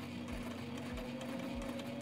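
Sailrite Ultrafeed walking-foot sewing machine running steadily in reverse, backstitching with the reverse lever held down, with a faint, slowly rising whine over the motor's steady hum.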